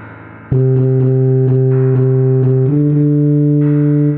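Synthesized tuba part playing a run of repeated short notes on one low pitch, then stepping up to a longer held note about two and a half seconds in, over a backing track.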